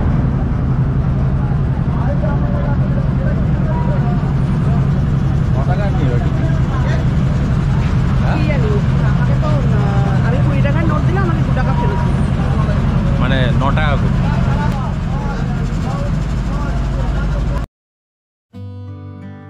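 A passenger river ferry's engine running with a steady low drone, under indistinct chatter of passengers. The sound cuts off suddenly just before the end.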